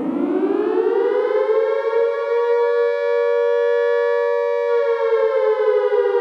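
Air-raid siren winding up to a steady wail and then beginning to wind down near the end, heard on its own with the music dropped out.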